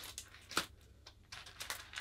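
Frisket film being peeled off its gridded backing paper and the sheets crinkling in the hands: faint, scattered crackles and a few light clicks.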